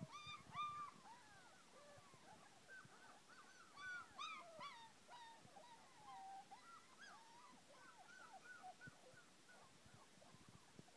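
Puppies whining and whimpering, faint short calls that rise and fall in pitch, coming in little clusters of several at a time.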